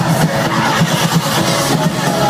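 Loud electronic dance music playing without a break.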